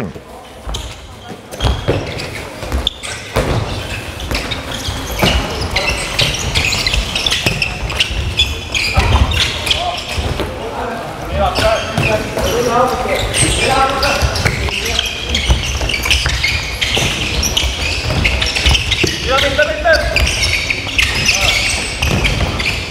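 Handballs bouncing and thudding on a wooden sports-hall court, with players' footsteps and short calls during a fast training drill.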